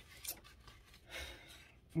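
Paper rustling as the small tarot guidebook is handled and opened: a brief flick just after the start and a longer rustle about a second in.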